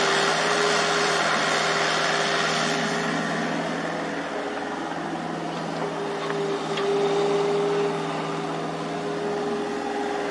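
Crawler excavator diesel engines running steadily while the machines dig, with a steady whine that is loudest near the start and again about seven seconds in.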